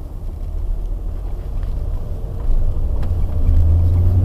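Car engine and road rumble heard from inside the cabin as the car pulls away from a traffic light, the low rumble growing louder about two and a half seconds in.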